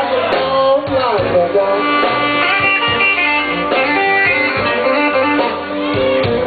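Live electric blues band playing a slow blues, with electric guitar carrying the lead and bending notes over the band.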